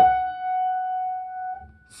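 A single piano note, F-sharp, struck once on a black key. It rings steadily at one pitch and fades for about a second and a half before stopping.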